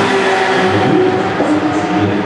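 Racing car engine running at a steady pitch on the circuit, its note stepping down about one and a half seconds in.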